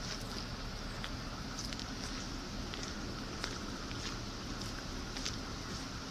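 Steady outdoor background noise, a low even rumble and hiss, with scattered faint ticks several times through it.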